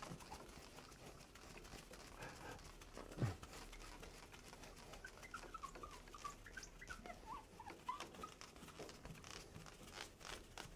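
A cloth wiping a glass lightboard, faint, with a run of short high squeaks of the cloth rubbing on the glass in the second half. A single low thump about three seconds in.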